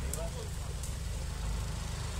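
Off-road 4x4's engine running low and steady as it crawls over a forest slope, with a short shout of a voice near the start.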